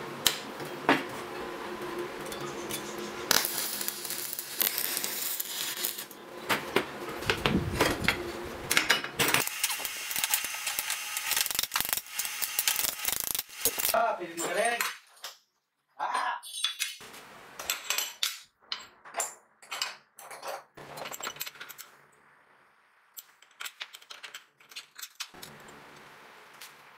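Steel parts handled and set down on a steel-topped workbench: repeated metallic clinks and clanks, dense through the first half and sparser, separate clicks in the second half.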